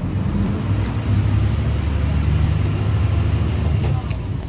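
Diesel engine of a city bus pulling away from a stop, heard from inside the cabin: a low engine drone that grows louder about a second in as the bus gets under way.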